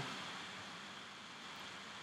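Faint, steady hiss of room tone and microphone noise, with no distinct event.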